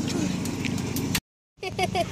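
Steady low outdoor rumble, with a few faint clicks, cut off about a second in by a brief dead-silent gap at an edit. A child's voice starts near the end.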